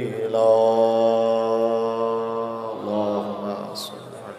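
A man chanting the drawn-out last word of an Arabic supplication into a microphone. The final syllable is held as one long note for about two and a half seconds, then a shorter note fades out near the end.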